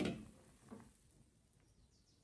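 Faint fizzing and bubbling from a pot of turmeric, garlic and onion brew as its foam settles, after a short louder sound at the very start.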